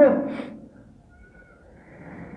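A man's sermon voice ends a phrase, then a quiet pause of room tone with a faint, brief thin high tone about a second in.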